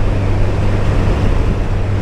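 1987 Kawasaki ZL1000's four-cylinder engine running steadily at cruising speed, heard from the saddle under a steady rush of wind on the microphone.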